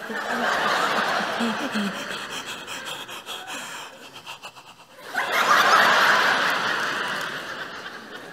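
Audience laughing: a wave of laughter that fades away by about four seconds in, then a second, louder wave about five seconds in.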